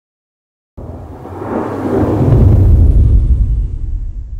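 A whoosh-and-rumble sound effect for a logo reveal. It starts suddenly about a second in, swells into a deep rumble that is loudest about midway, then fades.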